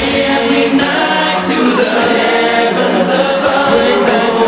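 Male pop vocal group singing a sustained harmony over backing music, several voices at once; the deep drum beat heard just before drops away, leaving mostly voices.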